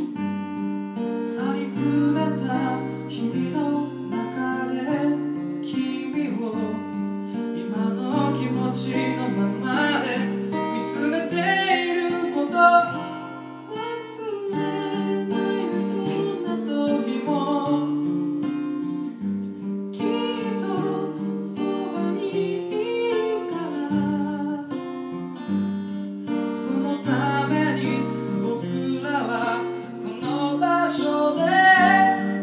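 An acoustic guitar played in chords accompanies a singer on a microphone, with a brief lull about halfway through.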